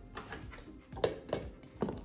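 Ninja Creami plastic pint containers with lids being set down and shifted on a countertop: a few light clicks and knocks in the second half.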